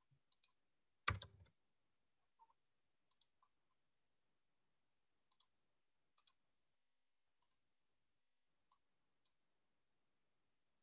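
Near silence broken by faint, scattered clicks every second or so, with a louder quick run of clicks about a second in, typical of a computer keyboard and mouse being used at a desk.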